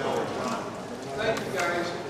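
Many people talking at once in a large room, their overlapping conversation too blended to make out words, with a few light clicks among it.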